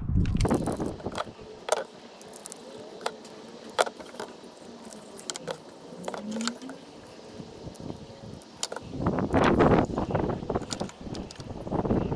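Small sharp clicks and taps of hands working plastic spark plug wire boots and a small screwdriver while dielectric grease is dabbed into the boots. Around nine seconds in comes a louder stretch of rustling and rattling as the bundle of wires is handled.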